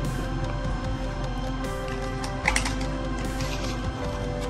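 Background music with sustained notes and a light percussive hit about every second and a half.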